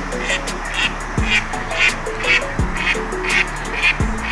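A duck calling repeatedly, about twice a second, over background music with a steady beat.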